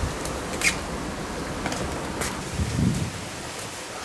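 Steady background hiss with a few faint, brief swishes and scuffs from two people moving through a sparring drill on a stone patio, and one soft low thump a little before the end.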